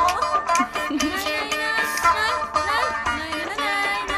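Lively Turkish folk dance music: a plucked string instrument playing quick runs with bending notes over a steady hand-drum beat.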